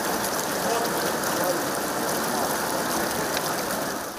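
Water of a stepped cascade fountain rushing and splashing over its steps, a steady even noise.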